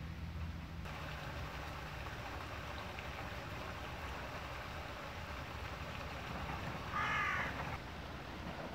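Steady running brook water, with one loud crow caw near the end.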